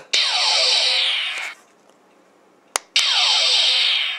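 Diamond Select Star Trek II hand phaser toy firing twice from its small built-in speaker, set to its last, destruct setting. Each shot starts with a click of the fire button, then a buzzing electronic beam sound with falling sweeps that lasts about a second and a half.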